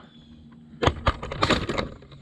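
A quick run of sharp clicks and knocks of objects being handled, starting a little before halfway and bunched near the end.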